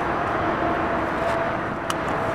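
Steady outdoor background noise like traffic, with a faint steady hum and one light click near the end.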